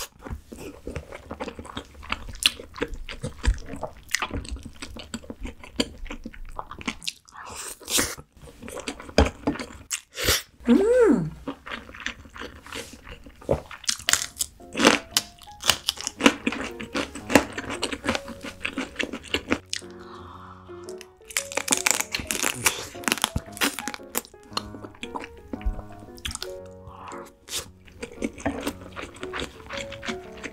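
Close-miked eating sounds: many crisp crunches from biting into a fresh green chili pepper, mixed with chewing of soy-marinated raw crab and rice.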